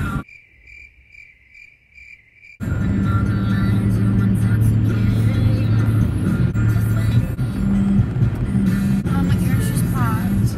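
All other sound cuts out for about two and a half seconds while a cricket chirps six times at even intervals, the stock crickets effect for an awkward silence. Then loud music with a heavy bass comes back in abruptly.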